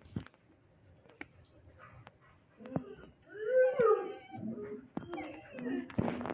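A dog howling: one wavering, pitched call about halfway through is the loudest sound. Fainter short clicks come before it.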